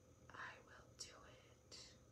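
Faint whispering: a few breathy words spoken under the breath, with two short hissing sounds like an "s".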